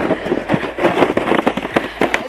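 Plastic sled sliding over thin, crusty snow and grass: a dense, irregular crackling and scraping of the hull against the ground.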